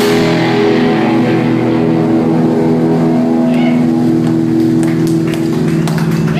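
Live rock band: an amplified electric guitar chord held and ringing loudly, with only a few light drum strokes under it.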